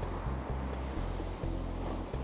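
Background music with a low bass line and light ticking percussion.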